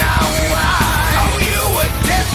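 Heavy metal song with a male voice singing and yelling, and a live drum kit (DW PDP drums, Paiste cymbals) played along to the track in steady, hard-hitting time.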